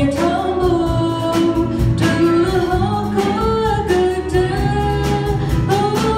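A girl singing a gospel song into a microphone, backed by a live band of drum kit, bass guitar, guitar and keyboard, with steady drum beats under the melody.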